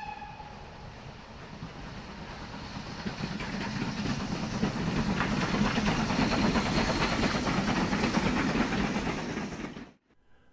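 Steam train: a brief whistle at the very start, then the train running, growing louder over the first few seconds, with wheels clicking over rail joints, before it cuts off abruptly at the end.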